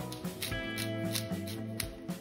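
Background music: a guitar-led track with a steady beat.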